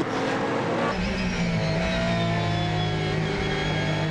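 Race car engines: about a second of cars passing, then a steady onboard engine note whose pitch slowly climbs as the car accelerates.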